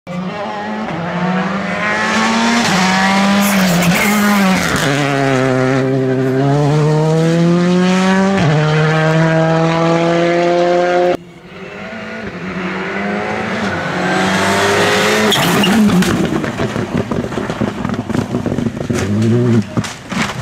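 Rally cars at full effort on a loose special stage. For the first half, one car's engine note rises and falls as it brakes and shifts through the gears. After an abrupt cut about halfway in, a second car accelerates hard past, louder and rougher, with sharp pops near the end.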